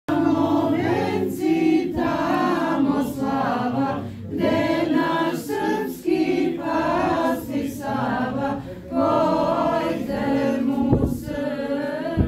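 A small group of young voices singing an Orthodox hymn together without accompaniment, in phrases of about two seconds with brief breaks between them.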